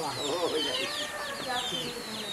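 Chickens clucking, with many short, high, falling peeps repeating throughout.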